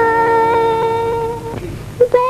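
A woman humming one long, steady held note in an old Hindi film song, fading out near the end.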